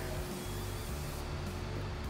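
WD-40 Rust Release penetrant aerosol sprayed onto a cloth rag: a hiss of about a second, over background music.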